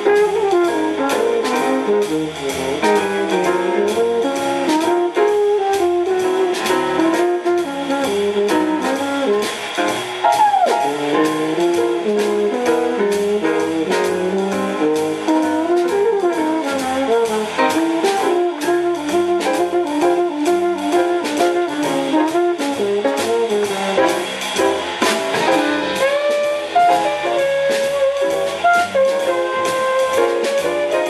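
Live small-group jazz: a trombone improvising a melodic solo, with slides in pitch, over upright bass, drums with steady cymbal time, and piano.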